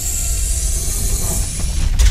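Sound effect for an animated logo intro: a steady, loud noisy rush with a deep rumble underneath and hiss on top, with no tune or voice in it.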